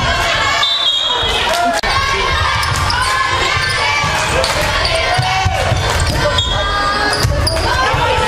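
Live basketball play in a large sports hall: the ball bouncing on the wooden court, sneakers squeaking and players calling out.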